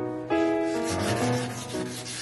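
A lacquered panel being wet-sanded by hand: a continuous scraping rub that starts just after the beginning, heard over soft piano music.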